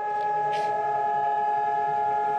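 Civil-defence siren sounding the steady Holocaust Remembrance Day memorial siren: one level, unwavering tone made of several pitches, held without rising or falling, the signal for the country to stand still in remembrance.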